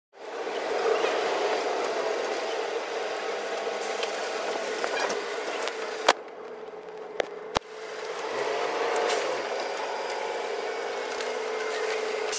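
Bus interior noise: the engine and road running with a steady hum. About six seconds in it drops quieter for a moment, with a couple of sharp clicks, then resumes.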